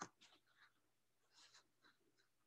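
Near silence in a small room, with a faint click at the start and a few faint rustles, as of paper being handled.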